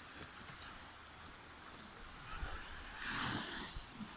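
Gentle surf on the Baltic shore, a steady wash of small waves with low wind rumble on the microphone, and a louder rush of water or wind about three seconds in.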